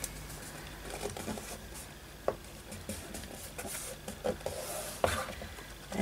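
Fingers pressing and smoothing glued paper strips onto a kraft-board tag: faint rustling and soft taps, with one sharper tap a little over two seconds in.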